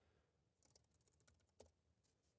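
Faint computer keyboard typing: a few scattered key clicks over near silence, the clearest one about a second and a half in.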